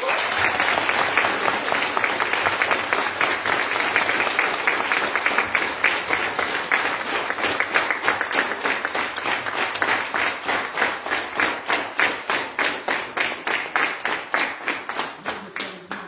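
Audience applauding, starting suddenly and loudly, then settling into rhythmic clapping in unison with a steady beat over the second half.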